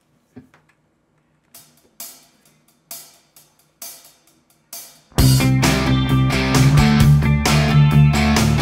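Electric guitar through a Line 6 Helix crunch lead patch with parametric EQ, recorded over a backing track. A few sparse drum hits come first, then about five seconds in the distorted guitar and the full band come in loud and heavy.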